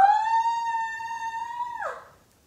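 A woman's voice holding one high 'ooh'. It slides up at the start, stays steady for nearly two seconds, then drops off.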